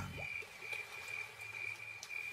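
Faint night chorus of frogs and insects, with one steady high-pitched note running through and a few soft short calls in the first second.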